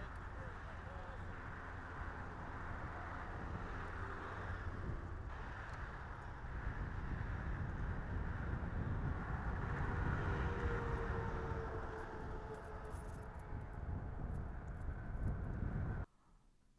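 Outdoor ambience with a steady low rumble of traffic, swelling louder for a few seconds in the middle as a vehicle passes.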